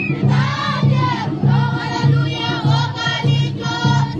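Many voices singing together as a choir over a steady low beat, about two beats a second.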